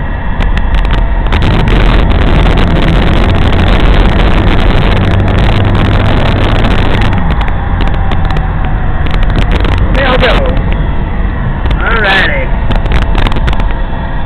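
Steady loud road and wind noise inside a moving car, with a deep low rumble. Two short voice sounds break through about ten and twelve seconds in.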